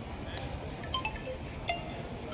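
A few short, faint tinkling tones at different pitches over steady outdoor background noise.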